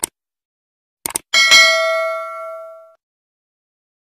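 Subscribe-button animation sound effect: a short click, then a quick double click about a second in, followed by a bright bell ding that rings on and fades over about a second and a half.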